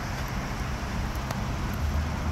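Steady low rumble of outdoor road traffic, with a single faint click a little past the middle.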